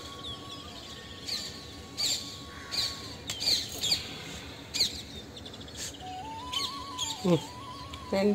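Small birds chirping, a string of short sharp calls a second or so apart, over faint background music holding a high note that steps up and down.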